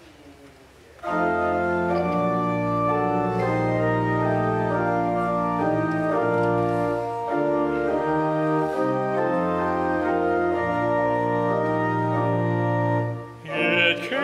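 Church organ playing the introduction to a hymn: sustained chords over a moving bass line, starting about a second in and breaking off briefly near the end.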